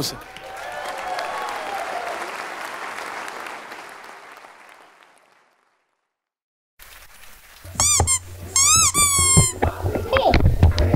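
Audience applause dying away to silence. Near the end come a baby's high squeals and cries, two or three rising-and-falling calls, from a recording played in the hall.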